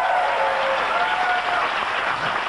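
Studio audience applauding.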